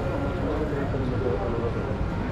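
A man's voice talking close by, over a steady low rumble of street noise.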